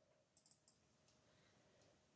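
Near silence: room tone, with a few faint clicks about half a second in.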